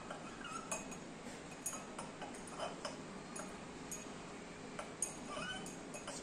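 A glass stirring rod clinking lightly and irregularly against the inside of a small glass beaker as ash is stirred into water, with the sharpest clink about five seconds in.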